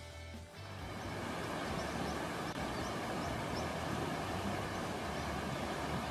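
Rushing water of a foaming river running over rapids, swelling in just under a second in and holding steady, with soft background music underneath.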